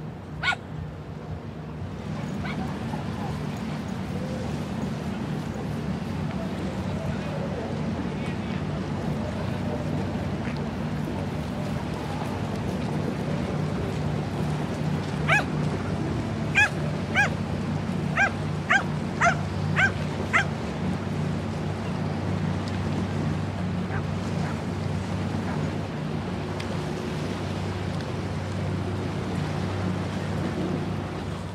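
Dog barking: one sharp yip just after the start, then a run of about eight short, high barks over some five seconds midway, heard over a steady low hum.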